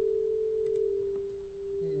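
Steady electronic sine-like tone, a little above 400 Hz, from a Pure Data patch, heard through a phasor-driven variable delay with a half-cosine window. Its loudness sags about one and a half seconds in: the uneven, wavering amplitude of this single-window delay-line pitch shifter.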